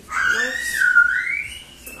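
A fine-mist spray bottle spritzed in a test spray, under a louder high whistle-like tone that dips and then rises over about a second and a half.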